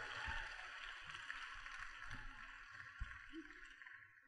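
Audience applause in a theatre, dying away gradually and ending just before the next speaker begins.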